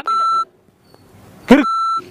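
Two steady, high censor bleeps: a short one at the start and another near the end, with a brief burst of a voice cut off by the second bleep.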